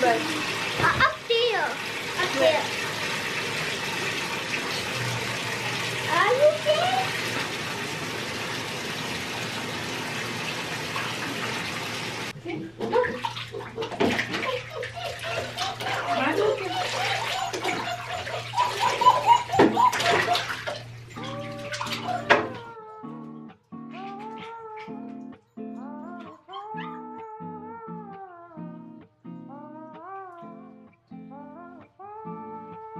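Water running from a bathtub tap into the tub, a steady rush that cuts off suddenly about twelve seconds in. Splashing water and voices follow. About two-thirds of the way through, soft background guitar music takes over.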